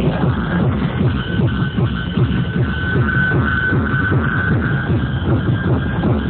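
Loud electronic dance music with a heavy bass beat played over a large DJ sound system, with a held high synth note through the middle. The upper end is cut off, so it sounds dull and bass-heavy.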